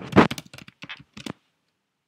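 Computer keyboard typing: a louder thump just after the start, then a quick run of keystrokes that stops after about a second and a half.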